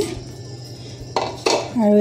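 Peeled potato pieces tipped from a plate into an aluminium pressure cooker: two quick clanks against the metal pot a little over a second in.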